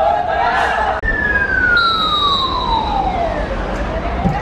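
Footballers shouting together in a team huddle. After a cut, a single long clear tone slides steadily downward in pitch for about two and a half seconds over background noise.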